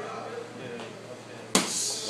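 A boxing-gloved punch landing on a focus mitt: one sharp smack about one and a half seconds in.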